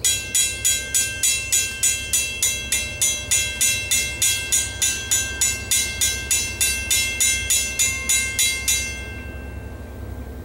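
Railroad grade-crossing bell ringing, about three strikes a second, while the crossing gates come down. It stops about nine seconds in, once the gates are down.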